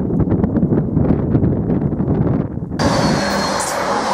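Wind buffeting the microphone over an empty track. About three seconds in, there is an abrupt change to a Greater Anglia Class 755 FLIRT passenger unit passing at speed close by, with rolling noise and a thin high tone that falls slightly.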